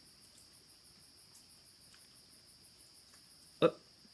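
Faint, steady chirping of crickets on a summer night, a high, evenly pulsing trill.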